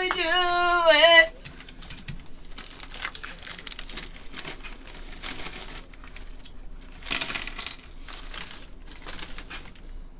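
A raised, drawn-out voice for about the first second, then light crinkling and rustling handling noise. There is a louder rustle about seven seconds in.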